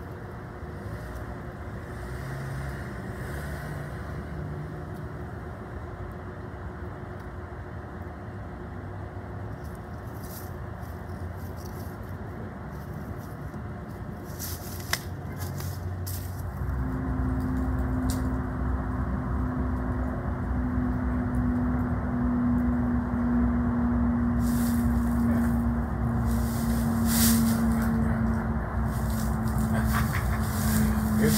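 A motor running with a steady hum. About halfway through a stronger steady drone joins in and the sound grows louder, with a single sharp click just before it.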